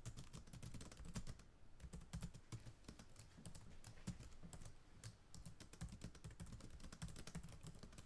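Faint typing on a computer keyboard: quick, irregular keystroke clicks.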